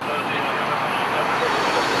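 Steady hum of road traffic, starting abruptly and holding even throughout.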